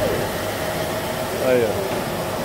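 Steady rush of a 1980 Ford Landau's air conditioning blowing through the dash vent, with the engine idling underneath. The system has just been recharged with refrigerant and is starting to cool.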